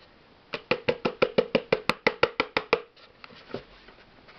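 A fast, even run of sharp taps, about seven a second, each with a short ring. A hand is knocking the container of powdered sugar to shake the powder out into the pot. The taps stop a little before three seconds in, and a few faint ticks follow.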